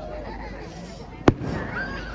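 Aerial firework shell bursting with one sharp bang a little past the middle.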